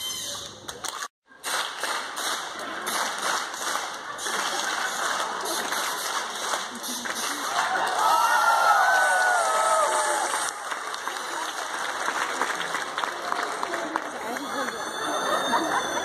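A theatre audience clapping and cheering, with talk mixed in; the sound drops out briefly about a second in. The noise is loudest about halfway, where a wavering high-pitched squeal rises over it.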